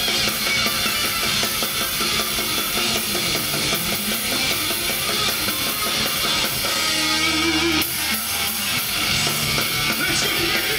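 Hardcore punk band playing live and loud: distorted electric guitars over fast, driving drums with bass drum. About seven seconds in, the low end drops away briefly before the full band carries on.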